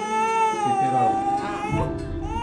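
A sick infant crying: one long, slightly wavering wail that breaks off near the end.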